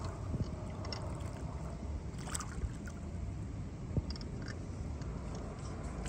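Water sloshing and gurgling against a small fishing boat's hull, with a low steady rumble, and a single sharp knock on the boat about four seconds in.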